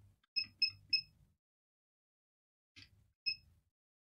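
Hot air rework station beeping as its buttons are pressed to set the temperature: three short, high beeps about a quarter second apart, a faint click, then one more beep.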